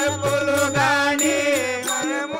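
A man singing a Telugu devotional folk bhajan (tattvam) with vibrato, accompanied by a sustained harmonium drone, tabla strokes and ringing hand cymbals keeping time.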